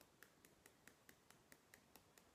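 Faint, quick fingertip taps on the side of the hand, about four to five a second, in an even rhythm: EFT tapping on the karate-chop point.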